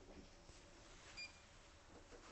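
Near silence: faint room tone, with one short, faint electronic beep a little over a second in.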